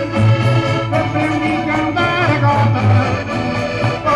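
Live Minho folk-dance music from a rancho folclórico band, carried by accordion (concertina) over a steady bass, playing on without a break.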